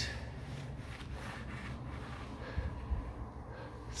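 Footsteps on an ice-covered walkway: a few faint, irregular scuffs and taps of shoes on ice, one a little louder about two and a half seconds in, over a steady low rumble.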